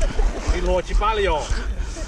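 Men's voices calling out faintly, words not clear, over a steady low rumble.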